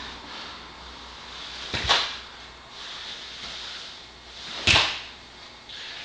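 Two sharp snaps about three seconds apart from a barefoot karateka in a gi moving through a kata, over a faint low hum.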